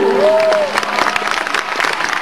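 Audience applauding at the end of a live song. A short single tone rises and falls under the clapping in the first half second.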